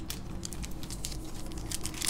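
Soft crinkling and small ticks of a foil Panini Prizm basketball card pack handled between the fingers, its edge being picked at.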